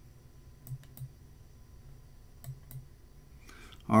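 Computer mouse clicking: two pairs of short clicks, the second pair about a second and a half after the first, over a faint steady room hum.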